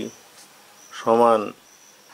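A man's voice holds one short drawn-out syllable about a second in, over a faint steady high-pitched whine.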